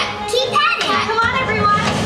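Many young children's voices calling out together from a theatre audience, with music faint beneath them.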